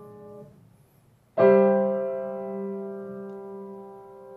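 Upright piano played slowly: a held chord fades out, a brief pause follows, then a loud full chord is struck about a second and a half in and left to ring, slowly dying away.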